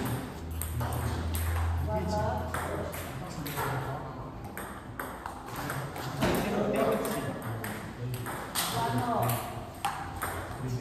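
Table tennis balls clicking off bats and tables in rallies, a quick irregular run of sharp ticks through the whole stretch.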